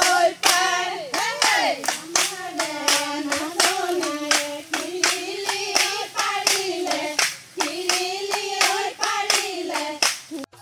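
A group of women singing a Jeng Bihu song together while clapping their hands in a steady beat.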